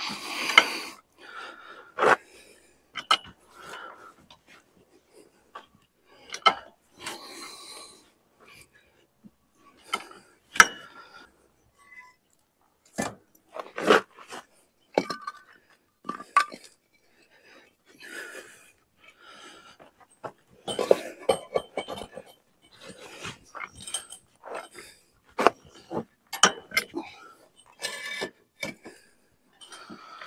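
A ratcheting farm jack being pumped by its long handle to lift a hay rake: irregular sharp metallic clicks and clanks as the jack takes each step up.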